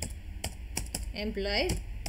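Computer keyboard keystrokes: about half a dozen separate key clicks at an uneven pace as a word is typed.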